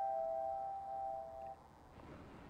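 A single held keyboard note closing a soft piano music bed, ringing steadily and cutting off about one and a half seconds in.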